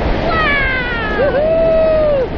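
A person's high-pitched vocal whoop that slides downward, then settles into a steady held note near the end, over steady wind rush under the parachute canopy.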